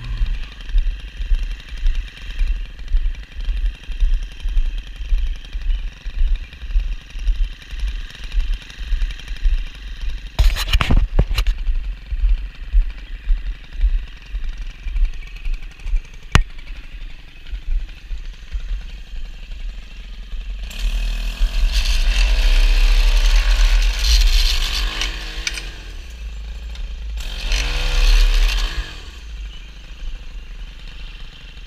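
Two-stroke gas stick edger idling with a throbbing, uneven beat, then revved up and let back down twice in the second half. A brief clatter of knocks about ten seconds in.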